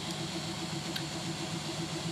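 Steady low machine-like hum with a faint, evenly pulsing tone in it, and a single short click about a second in.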